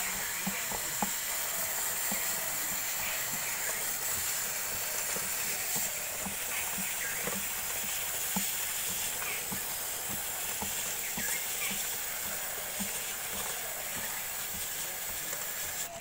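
Aerosol chain lube spraying onto a motorcycle drive chain in a steady hiss, with faint irregular ticks underneath.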